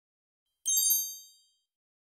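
A single bright, high chime sound effect, a ding made of several ringing tones at once. It starts suddenly under a second in and fades out over about a second.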